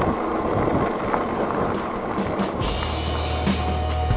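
Wind on the microphone and riding noise from the e-bike on gravel, then electronic background music with a beat and a steady deep bass comes in about halfway through.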